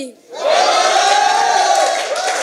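Audience cheering and whooping, rising suddenly about a third of a second in and staying loud.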